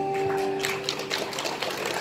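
Live backing music from a small band: a held chord that fades after about a second, overlapped by a run of quick, uneven strokes.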